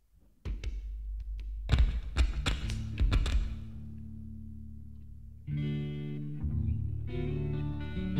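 Rock band on stage about to start a song: a sudden low thud, then a few sharp struck hits with low notes ringing on and dying away. About five and a half seconds in, a guitar starts playing sustained chords as the song begins.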